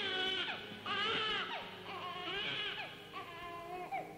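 A baby crying: a string of wailing cries, each rising and then falling in pitch, about one a second.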